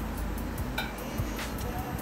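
Background music, with a few short mouth clicks from chewing soft mochi ice cream.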